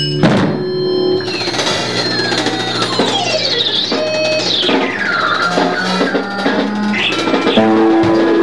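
Live rock band playing: an electric guitar run through a board of effects pedals makes repeated sweeping pitch glides, mostly falling, over sustained bass notes and drums.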